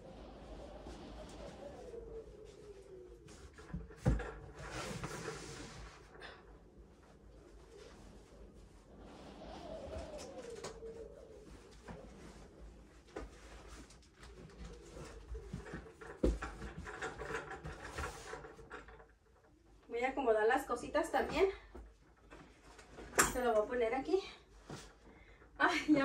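Wind gusting and whistling outside the house, rising and falling in waves, with two sharp knocks from storage bins being set into a cube shelf; near the end a voice briefly sounds.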